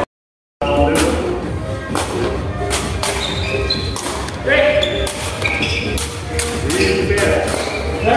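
Sepak takraw ball kicked back and forth, sharp thuds echoing in a large sports hall, with players calling out now and then. The sound cuts out completely for about half a second just after the start.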